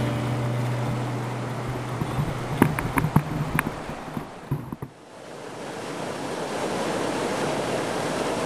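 Whitewater rushing as a canoe runs river rapids, with a few light knocks in the middle; after a brief dip about five seconds in, the steady rush of a waterfall cascading over rock swells up.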